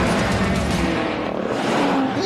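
BMW M5 engines at full throttle in a drag race, the leading car being the new twin-turbo V8 M5. The engine note holds steady and then falls in pitch near the end as the cars pass.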